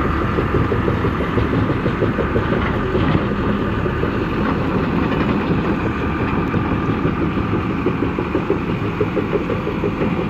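Engine of a tracked transporter running steadily as the machine drives along a dirt track, a continuous rough, low drone.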